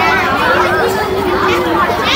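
Speech only: a voice talking over a public-address loudspeaker, with chatter from people nearby.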